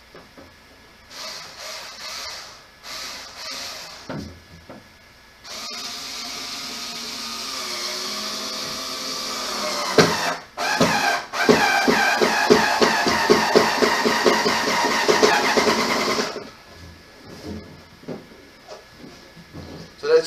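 Cordless power drill driving screws into a plastic toddler table. It gives a few short bursts, then one long run of about ten seconds: the whine rises in pitch and then turns into a rapid pulsing before it stops.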